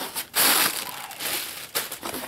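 Plastic air-pillow packing crinkling and rustling as it is pulled out of a cardboard box, loudest about half a second in.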